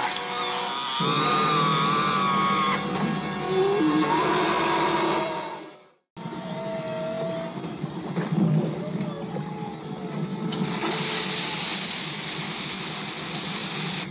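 Film soundtrack: music with held and wavering notes that fades out about six seconds in, then comes back. About eleven seconds in, a steady hiss joins it: a hose spraying water across a boat deck.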